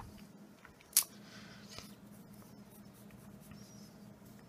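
Pencil lightly sketching on paper: faint, soft scratching strokes, with one short sharp click about a second in.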